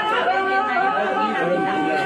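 Several people talking over background music that has long held notes.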